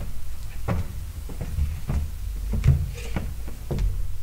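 Handling noise at a lectern picked up by its microphone: papers being gathered and scattered knocks and thumps, the loudest about two and a half seconds in, over a low rumble.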